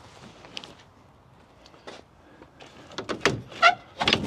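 Pickup truck tonneau cover pulled along its rails over the bed: a couple of light clicks, then a louder sliding rattle near the end.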